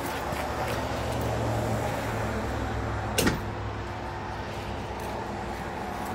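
A jacked-up trailer wheel spinning freely on its hub gives a steady low rumble. A sharp click comes a little over three seconds in, and the rumble dies away soon after as the electric brakes, energised by the pulled breakaway pin, stop the wheel.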